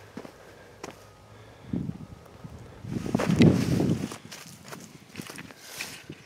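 Footsteps on loose soil as a person walks between planted rows, with a few scattered crunches and a louder rough rustle lasting about a second in the middle.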